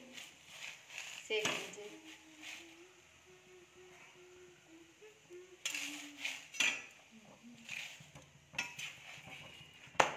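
A perforated steel spatula scraping and clinking against a tava as a paratha is pressed and turned, in several separate strokes, the loudest a little past halfway.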